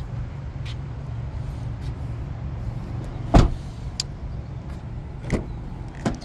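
An SUV's door shut with one solid thud about halfway through, with a lighter click near the end, over a steady low hum.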